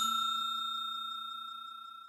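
Bell-ding sound effect of a subscribe-button animation, a single chime ringing out and fading steadily with a slight flutter.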